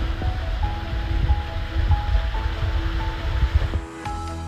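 Rushing water of a small waterfall in a narrow rock gorge, an even hiss over a heavy, uneven low rumble, under calm background music. The water noise cuts off just before the end, leaving the music.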